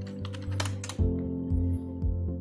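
Computer keyboard typing, a quick run of keystrokes in about the first second, over soft background music of sustained chords.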